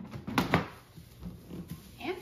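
Two sharp plastic clicks close together about half a second in, as the lid of a touchless motion-sensor trash can is pressed down and snaps into place on its base, followed by faint handling.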